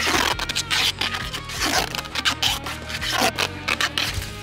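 Gray duct tape pulled off the roll in a run of quick rasping rips as it is wound around an alligator's jaws, over background music.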